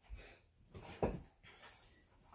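A few soft knocks and scuffs as a cardboard shipping box is picked up and carried, the clearest about a second in.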